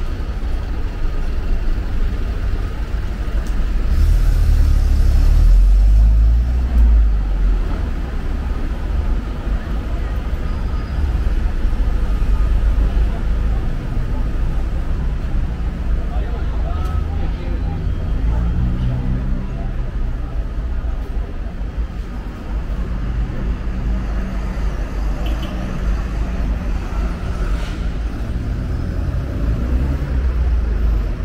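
Busy city street traffic: a steady rumble of passing vehicles and engines, swelling about four to seven seconds in, with voices of passers-by mixed in.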